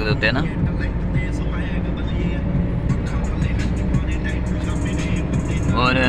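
Steady engine and tyre noise heard from inside a car's cabin while it drives along a road.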